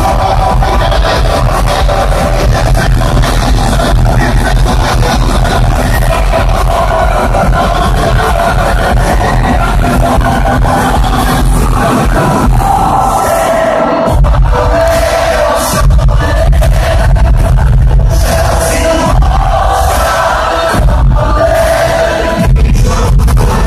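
Loud concert music through an arena sound system, with heavy steady bass. The bass thins out for a moment a little past halfway, then comes back in full.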